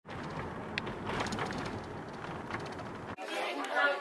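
Muffled background voices over a low rumble, with a single click under a second in. Then an abrupt cut, and a woman starts speaking close to the microphone near the end.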